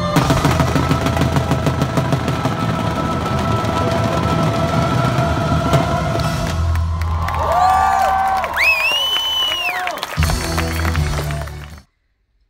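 Music with rapid crackling bangs of pyrotechnics over it. From about seven and a half seconds in come whistling tones that rise, hold and fall. The sound cuts off suddenly just before the end.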